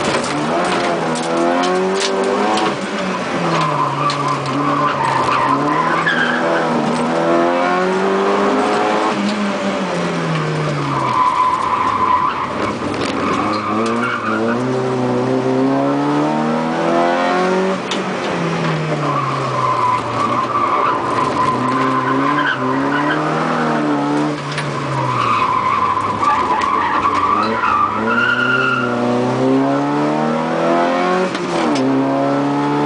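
Rally car's engine heard from inside the cabin, its revs climbing and dropping again and again through the gear changes, with the tyres squealing through corners several times.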